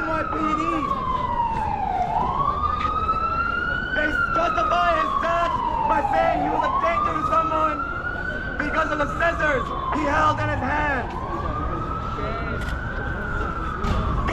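Emergency vehicle siren wailing, its pitch rising and falling slowly, about once every four and a half seconds, over crowd chatter.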